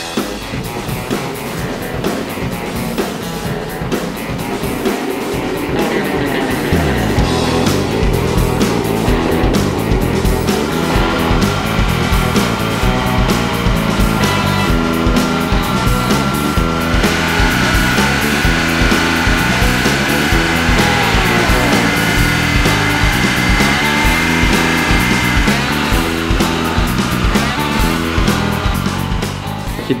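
Background music with a steady beat, getting louder about seven seconds in.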